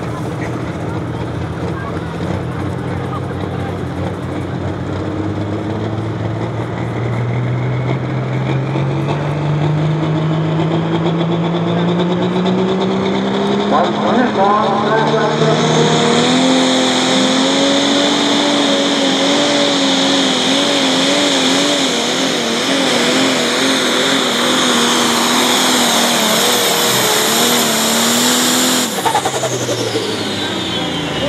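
Super Pro pulling tractor engine revving at the line, its pitch climbing slowly and steadily for about fourteen seconds. From about sixteen seconds in it runs flat out under load pulling the sled, with a wavering pitch and a loud hiss. The sound breaks off suddenly near the end.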